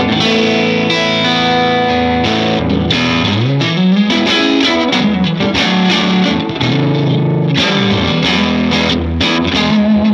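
Electric guitar, a Fender Custom Shop '62 Jazzmaster, played through a Matchless Chieftain 2x12 tube combo amp: ringing chords and single notes, with a note sliding up and back down about three to four seconds in.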